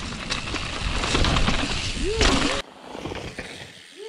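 A mountain bike's tyres rolling fast over a dirt and leaf trail while carving a corner, with wind rumble and knocks and rattles from the bike over the ground. The noise stops abruptly about two-thirds of the way through.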